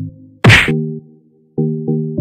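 An edited transition sound effect: one sharp whoosh-and-hit about half a second in, followed by short electronic synth chords as a new music track begins.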